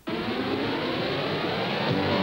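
A loud rising whoosh in a film's musical soundtrack, many pitches sliding upward together like a swept synthesizer or jet effect. Band music with guitar comes back in at the end.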